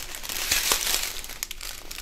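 A strip of small clear plastic bags filled with diamond-painting drills is flexed and handled, so the plastic crinkles continuously with scattered small clicks.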